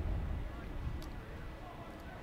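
Wind rumbling unevenly on the microphone, with faint voices in the background and one faint click about a second in.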